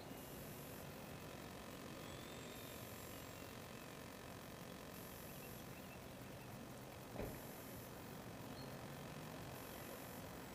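Faint steady background noise with a faint steady tone under it, and a single brief thump about seven seconds in.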